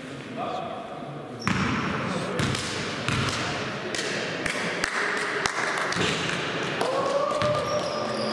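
A basketball bounced several times on a sports hall floor, sharp knocks about every half second that echo in the hall, under players' voices.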